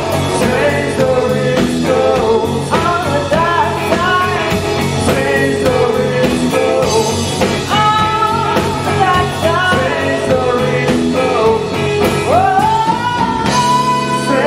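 Live blues-rock band playing loudly and without a break: electric guitar, bass guitar and drum kit, with a lead line of bending, sliding notes over the top.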